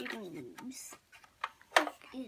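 A few small sharp plastic clicks from a plastic toy bus being handled and its parts fitted, the loudest one near the end, following a child's drawn-out word.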